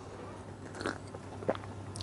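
A man sipping water from a glass and swallowing, quiet mouth and throat sounds, with a small click about three quarters of a second from the end.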